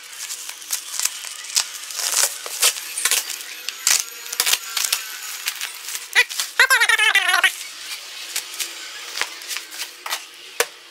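Plastic parcel wrapping being slit with a knife and pulled off a cardboard box: irregular crinkling, rustling and sharp crackles.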